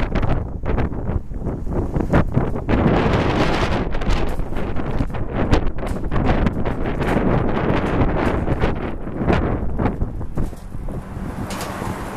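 Gusty wind buffeting the camera microphone in irregular, sudden blasts, easing slightly near the end. A passing car can be heard faintly near the end.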